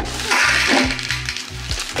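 Dry spaghetti sliding and rattling into a tall clear plastic storage canister, a dense rush that is loudest in the first second.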